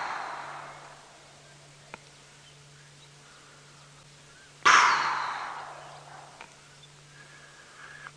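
Hippopotamus exhaling at the water surface: a sudden whooshing blow of breath and spray through its nostrils that fades over a second or so. One blow tails off at the start and a second comes about five seconds in, over a faint steady low hum.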